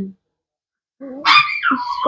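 A small dog gives one high-pitched bark that slides down in pitch, about a second in, after a moment of silence.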